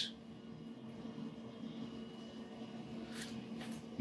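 Faint steady hum of a running continuous inkjet printer, its ink jet circulating back through the gutter, with a soft brief rustle a little after three seconds in.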